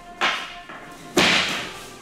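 Wooden pole stand pulled over by a kaginawa (hooked rope) and crashing onto the matted floor: a sharp hit about a quarter second in, then a louder clattering crash about a second in that dies away over half a second.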